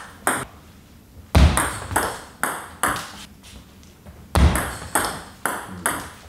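Table tennis rally: the plastic ball clicking sharply off the rubber-faced bats and bouncing on the table, about a dozen quick hits with a pause of about a second near the start.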